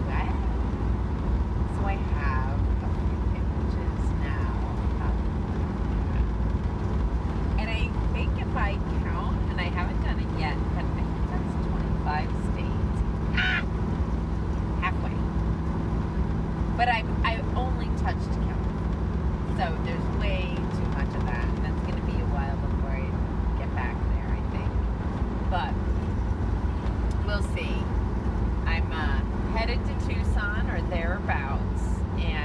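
Steady engine drone and road noise inside a Ford van's cab while driving, with a woman's voice talking on and off over it.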